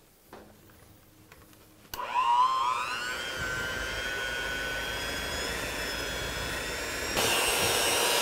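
Electric hand mixer switched on about two seconds in, its motor whine rising as the beaters spin up and then running steadily, as it beats cream cheese, eggs and powdered sugar in a plastic bowl. It gets louder near the end.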